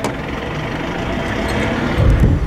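A vehicle engine running steadily, a low rumble that grows slightly louder over the two seconds, with a short click right at the start.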